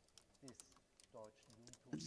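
Near silence in a pause of speech: a few faint, short voice sounds and scattered soft clicks.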